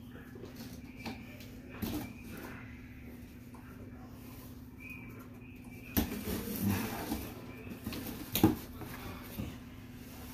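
Packing tape on a cardboard box being slit and the flaps worked open by hand: scraping and rustling of tape and cardboard with a few sharp knocks, the loudest about eight and a half seconds in. A steady low hum runs underneath.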